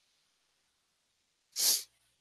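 A single short, sharp burst of breath through the nose, about one and a half seconds in, in an otherwise quiet room.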